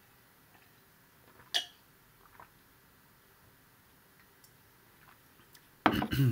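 Near-silent room tone broken by a single sharp click about a second and a half in and a couple of faint ticks soon after. At the very end comes a louder sharp knock, followed by a short breathy vocal sound.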